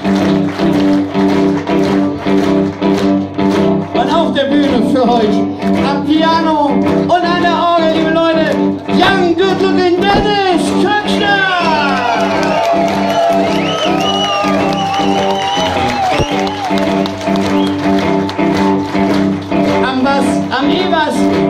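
Electric blues band playing live, vamping on a sustained chord. From about four seconds in to about sixteen seconds, a lead line with bent and wavering notes plays over it.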